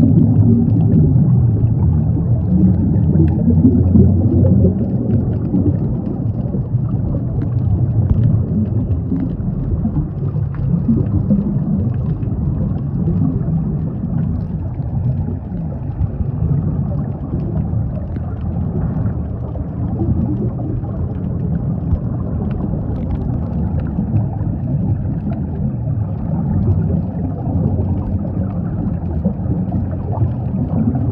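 Underwater ambient noise: a steady, muffled low rumble of moving water with faint scattered ticks and crackles.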